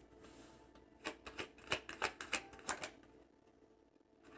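Tarot cards being shuffled by hand. A faint rustle, then a run of about ten quick, sharp card snaps over two seconds that stops about three seconds in.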